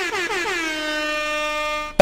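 A horn-like blaring tone, likely an inserted comedy sound effect, that slides down in pitch and then holds one steady note before cutting off abruptly near the end.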